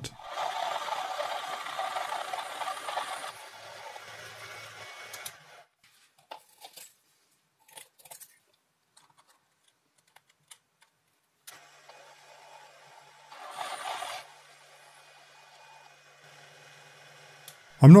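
Proxxon PD 250/e mini lathe drilling 42CrMo4 steel with a 10 mm solid carbide twist drill: a steady cutting noise that fades out about five seconds in. After a near-quiet stretch with a few faint clicks, it comes back briefly about twelve to fourteen seconds in.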